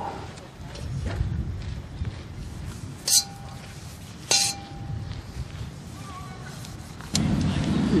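Two sharp metallic clinks about a second and a half apart, each with a brief ring, as a metal utensil knocks against the carbon steel wok. They sit over low rumbling handling noise.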